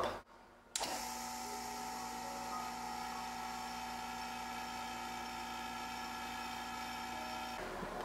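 Vacuum pump running with a steady hum made of several held tones, pulling air through the filter cake to dry it. It starts about three quarters of a second in, after a brief silence, and stops just before the end.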